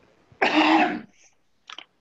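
A person coughs once, loudly and briefly, into a video-call microphone, with a shorter, fainter sound about a second later.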